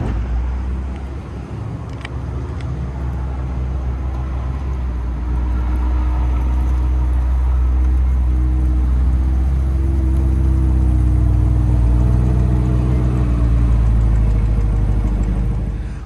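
Chevrolet C8 Corvette Stingray's 6.2-litre V8 running as the car moves at low speed, a steady low hum whose pitch rises a little through the middle and then settles.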